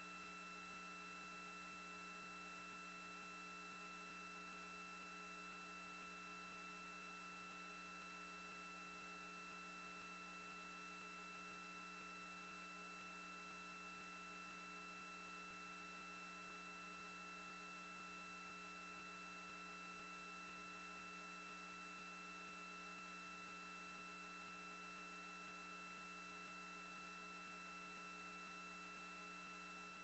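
Faint, steady electrical hum and hiss on an otherwise empty audio line, with fixed high whine tones over a lower buzz and no change or other event.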